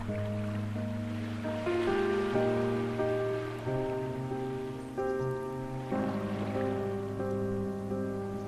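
Slow, soft ambient piano chords, new notes struck about every second and left to ring, over a soft wash of ocean waves that swells and fades.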